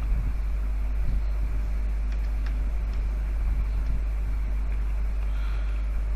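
Steady low hum of background noise on the recording, with a few faint clicks.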